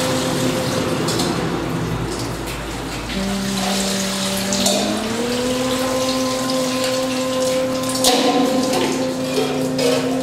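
Water splashing as it is poured over a stone Shiva lingam, heard early on, under music of long held notes. One note slides up in pitch about five seconds in.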